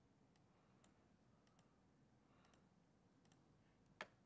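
Near silence with a scattering of faint computer mouse clicks, about seven or eight spread irregularly, and one sharper click at the very end.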